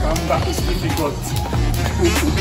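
Background music with a steady beat and held bass notes, and a melodic line on top.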